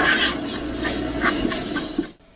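Onions and spices sizzling in a nonstick frying pan while a plastic spatula scrapes and stirs through them in several short strokes.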